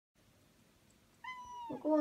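A tabby cat meowing once, a little over a second in: a single high meow about half a second long that falls slightly in pitch.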